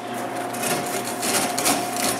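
Old window-screen mesh being pulled up and dragged off a patio screen door's aluminium frame, a steady rustling and scraping.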